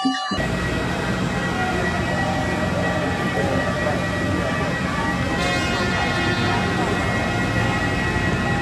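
Steady mechanical roar with a thin, steady high whine above it, from engines running on an airport apron. It cuts in suddenly just after the start and holds at an even level throughout.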